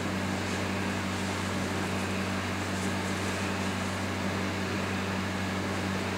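Steady room tone: a low, even electrical hum with a soft hiss behind it, with no music or speech.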